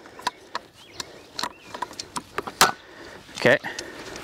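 A series of sharp clicks and clunks from a folding kayak cart being folded by hand, as its leaf-spring push-button latches are worked and the wheel arms swing sideways; the latch springs have rusted and catch. The loudest clack comes a little past the middle.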